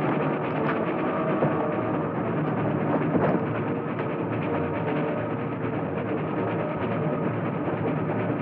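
Dramatic orchestral film score with timpani, and a louder hit about three seconds in.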